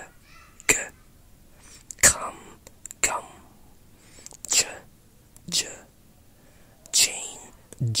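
A voice whispering isolated English speech sounds one at a time, about seven short breathy utterances spaced roughly a second apart, demonstrating Received Pronunciation.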